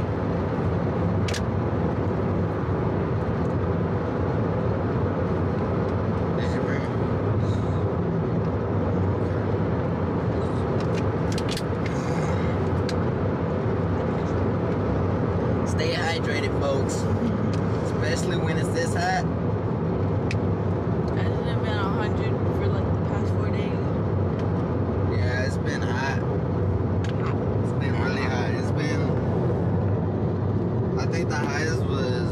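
Steady road and engine noise inside a moving car's cabin, with short bursts of voice or laughter now and then, mostly around the middle and near the end.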